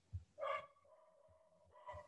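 A faint pitched animal call, twice: the first starts about half a second in and is drawn out for about a second, the second is shorter, near the end.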